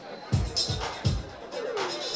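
Live electronic music kicking in about a third of a second in: a run of deep synthesized kick drum hits that each drop in pitch, with hissy hits above them.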